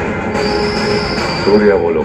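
Movie trailer soundtrack playing back: dramatic music and sound effects with a steady high-pitched whine running through, and a snatch of voices near the end.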